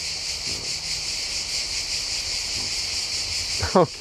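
Cicadas singing in a steady chorus: a continuous high-pitched buzz with a fast flutter.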